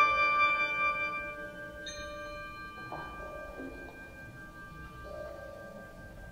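Contemporary chamber music for 37-reed sheng and percussion. A loud held chord fades over the first second and a half. About two seconds in, a struck metal tone rings in over soft sustained notes that hold to the end.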